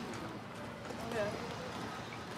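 Passersby talking close by in a steady outdoor crowd murmur, with the light taps of footsteps on pavement.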